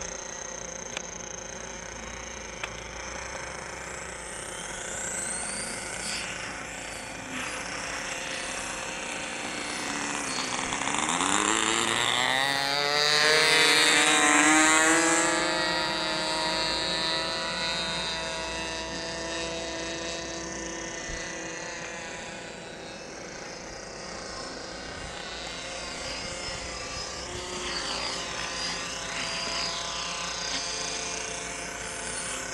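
Model airplane's .15-size nitro glow engine running in flight, its propeller buzzing steadily. In the middle it grows louder and rises in pitch as the plane passes close, then fades and drops in pitch as it flies away.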